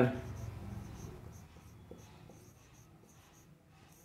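Faint scratching of a marker pen writing on a board, fading out over the last couple of seconds.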